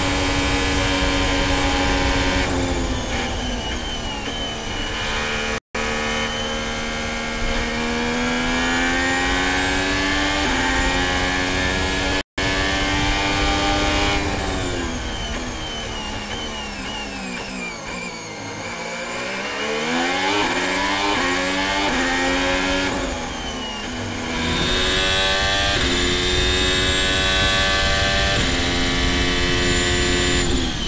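Formula 1 car's 1.6-litre turbocharged V6 hybrid engine heard onboard, running at high revs with quick gear changes. About halfway through, the pitch falls through a series of downshifts as the car brakes for a corner, then climbs again as it accelerates up through the gears. The sound cuts out briefly twice in the first half.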